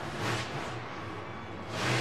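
Monster truck engine running hard under an even stadium din, swelling to a loud surge near the end.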